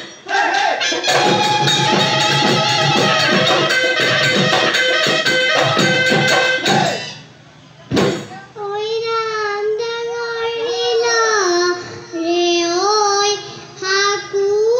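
Live Bihu music: dhol drums beating a fast, even rhythm under a melody, which stops about seven seconds in. After a sharp click, a single voice sings a line alone, its pitch sliding and wavering.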